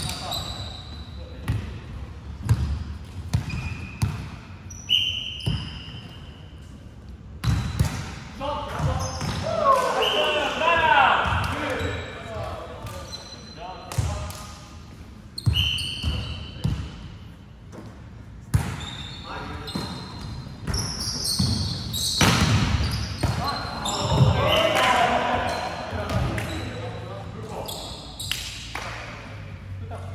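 Indoor volleyball play in a large, echoing sports hall: repeated sharp thuds of the ball being hit and bouncing, brief squeaks of court shoes on the wooden floor, and players shouting calls in two bursts.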